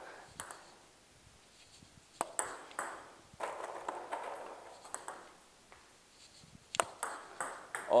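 Table tennis balls clicking: scattered sharp, pinging knocks of plastic balls, then near the end a cluster of quick clicks as the bat strikes a served ball and it bounces on the table.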